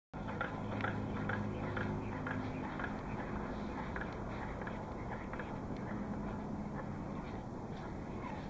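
Air compressor converted to a Stirling engine, its ringless pistons and flywheel turning over freely, with a soft tick about twice a second that slowly spaces out as it coasts.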